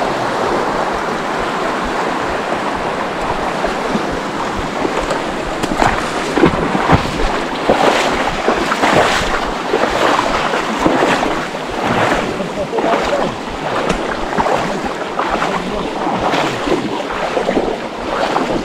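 Shallow river water rushing over a riffle, then the sloshing and splashing of legs wading through knee-deep water, surging roughly once a second with each stride.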